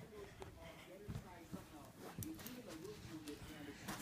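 Faint, indistinct voices in the background, with a few soft knocks.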